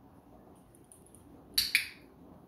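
Dog-training clicker pressed and released, a quick double click near the end, marking the golden retriever puppy's nose touch to the target stick.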